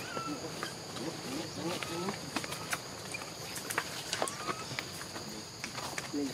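A steady, high-pitched insect chorus drones on, with scattered sharp clicks and a few short, faint chirping calls over it.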